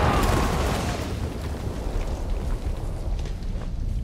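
The tail of a large landmine explosion: a deep rumble dying away over a few seconds, with scattered small crackles and impacts from falling debris.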